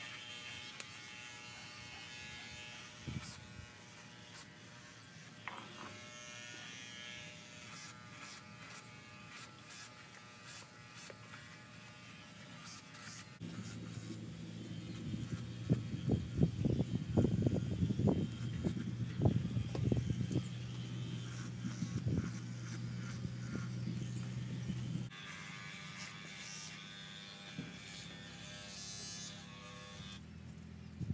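Small handheld electric horse clippers buzzing steadily while trimming a pony's face. About halfway in the buzz turns louder and deeper, with uneven flares, for roughly ten seconds before dropping back.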